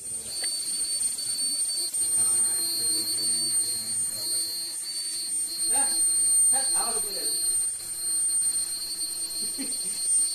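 Indistinct voices in a small room, loudest briefly about six and seven seconds in, over a steady high-pitched electronic whine.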